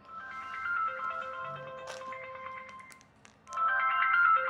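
A mobile phone ringing with an electronic melody ringtone. One phrase of a few notes plays for about two and a half seconds, then after a short pause the tune starts again.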